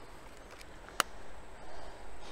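A single sharp click about halfway through, a Nikon Z6II mirrorless camera's shutter firing once for a low-angle shot, followed near the end by a faint rustle of handling.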